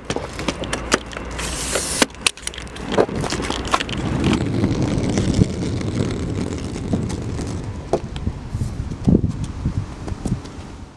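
Wheels of a hard-shell rolling suitcase running over pavement: a steady rumble broken by many sharp clicks and rattles.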